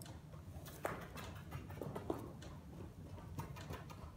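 A mule's hooves thudding faintly and irregularly on soft arena dirt as she runs.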